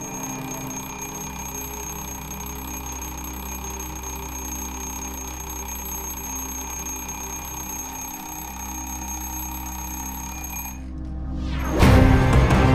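An alarm clock ringing steadily over soft background music; the ringing stops about a second before the end, and loud music breaks in right at the end.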